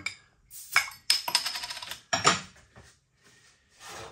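Metal crown cap levered off a glass beer bottle with a bottle opener: a sharp click, then about a second of metallic ringing clatter as the loose cap drops onto the bar, and another sharp knock about two seconds in.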